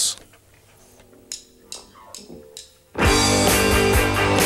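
A rock band with electric guitars, bass and drums starts a song live in a radio studio. It starts suddenly and loud about three seconds in, after a quiet lead-in with a few faint notes and taps.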